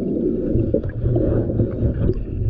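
Low, uneven underwater rumbling and gurgling of water, heard through a diver's camera in murky water.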